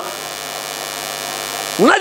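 Steady electrical mains hum and buzz with many overtones, unchanging in pitch or level. A man's voice comes back in near the end.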